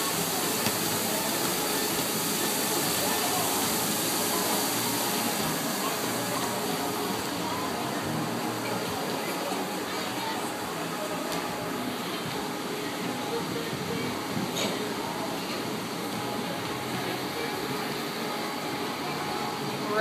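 Steady rushing wind and open-air noise, with faint distant voices. The high hiss eases off after about seven seconds.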